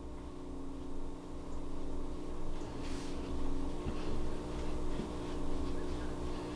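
Steady low hum with several steady tones, and a few faint, short rustles about halfway through.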